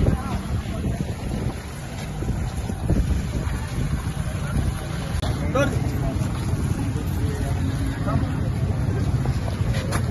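Wind buffeting the microphone as a steady low rumble, with scattered indistinct voices of people close by.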